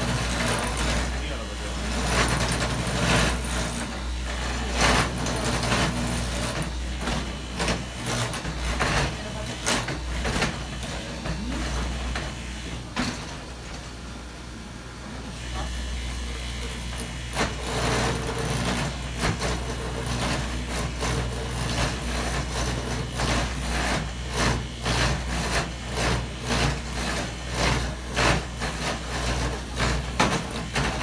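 An 80-year-old copying machine hollowing the inside of a wooden clog from fresh poplar: a steady motor hum with the cutter clattering rapidly through the wood. Around the middle it goes quieter for a couple of seconds, then starts again.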